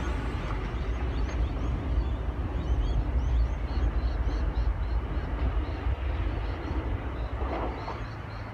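Oscar (H-set) electric multiple unit running away along the track and over a steel bridge: a steady low rumble of wheels on rail that fades near the end. Short high chirps are scattered over it.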